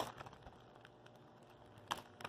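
A small clear plastic accessory bag being worked open by hand: a few faint crinkles and clicks, with one sharper click near the end.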